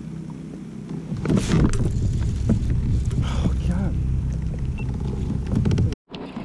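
Muffled, indistinct speech over a steady low rumble.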